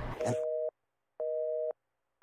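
Telephone busy signal: a two-note tone beeping on for half a second and off for half a second, twice, meaning the line is engaged and the call cannot get through.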